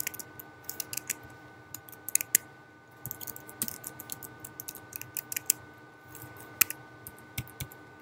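Typing on a computer keyboard: irregular bursts of sharp keystroke clicks with short pauses between words.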